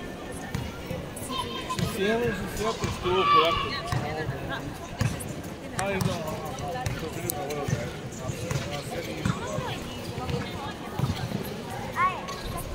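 A basketball bouncing on the court as it is dribbled, making repeated short thuds, with players' and spectators' voices calling out over it.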